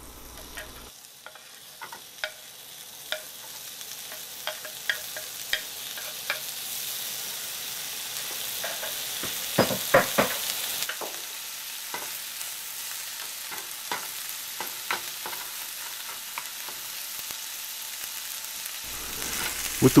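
Sliced mushrooms and green onions sizzling in butter in a nonstick skillet, a steady frying hiss that grows louder over the first few seconds, with scattered light ticks and pops. A cluster of louder knocks from stirring in the pan comes about halfway through.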